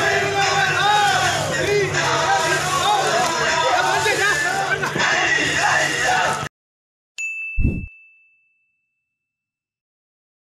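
Crew of a palliyodam snake boat chanting the traditional vanchipattu boat song in many overlapping voices over a steady low hum. It cuts off abruptly, and after a moment of silence a short electronic sting plays: a couple of clicks, a ringing high ding and a brief low thump.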